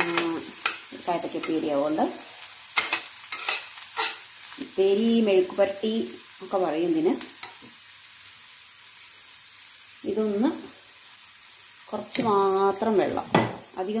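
A metal spoon stirring diced bitter gourd in an iron kadai. It scrapes the pan with squealing, wavering scrapes and clinks, in bursts through the first half and again near the end. The vegetables sizzle quietly in the oil between the bursts.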